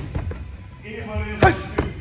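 An open palm striking the face of a freestanding torso training dummy: one sharp slap-thud about one and a half seconds in, with a lighter knock soon after.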